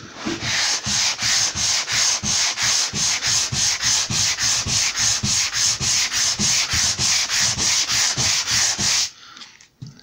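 Hand sanding a primed MDF edge with a foam-backed abrasive pad, quick back-and-forth rasping strokes about three a second, smoothing the grain raised by the first coat of primer. The strokes stop about nine seconds in.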